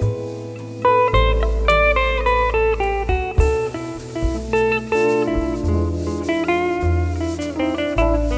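Jazz quartet playing live: electric guitar, piano, double bass and drum kit. A quick line of changing notes sits over held low double-bass notes.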